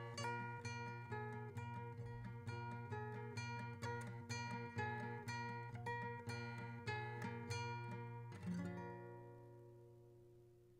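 Nylon-string classical guitar with a capo, fingerpicked in a steady pattern of plucked notes. About eight and a half seconds in it ends on a final chord that rings on and fades away.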